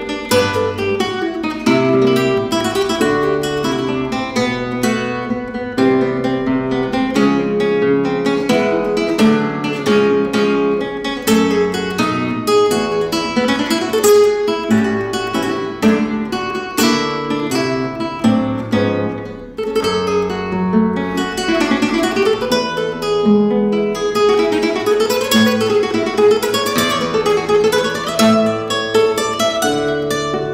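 Solo classical nylon-string guitar playing a flamenco-style Spanish piece: a continuous stream of fast plucked notes and chords, with quick up-and-down runs in the second half and a short drop in loudness about two-thirds through.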